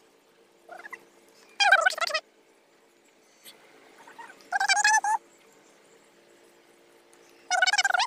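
Three short, loud, wavering animal-like calls, about three seconds apart, with a couple of fainter calls between them, over a faint steady hum.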